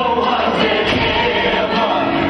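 Stage-musical music: a choir of voices singing over an instrumental backing, loud and continuous.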